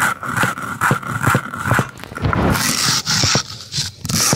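Hand-held grinding stone (lodha) rubbed back and forth on a flat stone slab (sil), grinding dry grains: a rhythmic gritty stone-on-stone scraping, two or three strokes a second.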